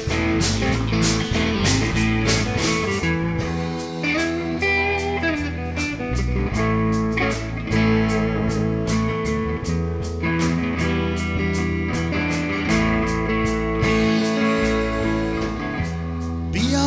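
Live rock band playing an instrumental passage: electric guitars over bass and drums, with cymbals struck in a steady beat.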